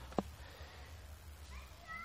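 Faint animal call near the end, a short rising tone that levels off and is held briefly. A single small click comes a fraction of a second in, over low background hum.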